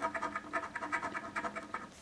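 Coin scraping the latex coating off a lottery scratch-off ticket in rapid back-and-forth strokes, stopping just before the end.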